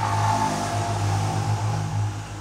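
A steady low mechanical hum, like a nearby engine running, with no speech over it.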